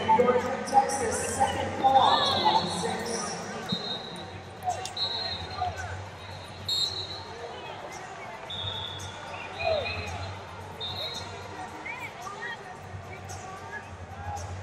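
Arena wrestling ambience: scattered shouts from coaches and spectators, with several short, high-pitched steady tones and occasional thuds. It is louder in the first few seconds, then settles to a lower background.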